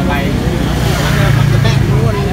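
Background voices over a low engine hum from a passing road vehicle, which swells about a second in.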